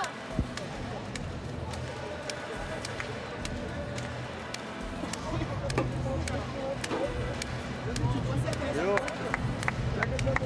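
Indoor sports arena ambience: music over the arena sound system, indistinct voices of players and coaches, and scattered sharp knocks like balls bouncing on the court.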